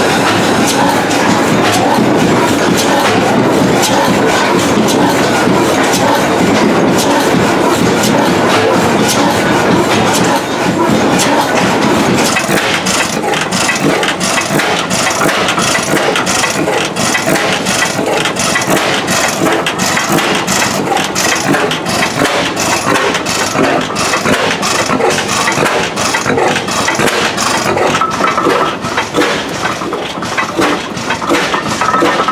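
Vintage stationary gas engines running, with a fast, regular clatter of firing and valve-gear beats. The sound changes about twelve seconds in as a different engine takes over.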